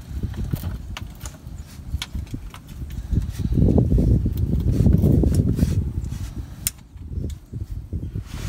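A low, uneven rumble that swells in the middle and fades near the end, with scattered light clicks and taps from hands working the loosened transmission pan bolts.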